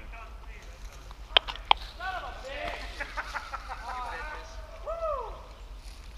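Distant voices calling out several times, with two sharp snaps about a second and a half in.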